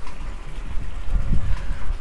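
Wind buffeting an outdoor microphone: a loud, uneven low rumble that rises and falls in gusts.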